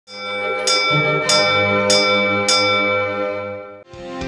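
A hanging metal school bell struck with a wooden mallet, hit four times a little over half a second apart, each strike ringing on into the next. The ringing cuts off suddenly near the end.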